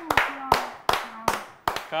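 A man clapping his hands about six times at an uneven pace while laughing, with short bits of voice between the claps.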